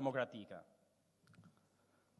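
A man's speech into a lectern microphone that breaks off about half a second in, followed by a pause with two faint clicks.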